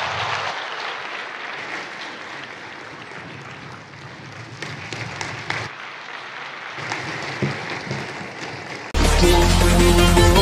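A large audience applauding steadily for about nine seconds. Near the end, loud music starts suddenly.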